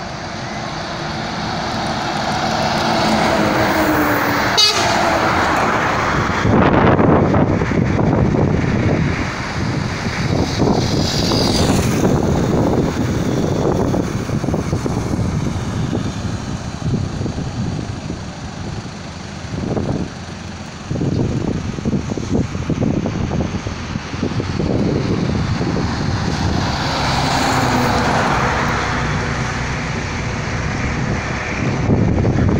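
Road vehicles passing close by: engine and tyre noise swells over the first several seconds as headlights approach, stays loud as traffic goes past, and swells again near the end as another vehicle approaches. A single sharp click comes at about four and a half seconds.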